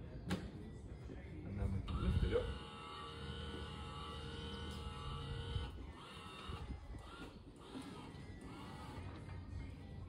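Electric motor of a Smart Lifter LM wheelchair hoist running with a steady whine for about four seconds, with a knock as it starts, then stopping.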